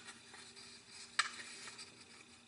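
Faint rustling and sliding of a sheet of origami paper being folded in half on a cloth-covered table, with one sharp click a little over a second in.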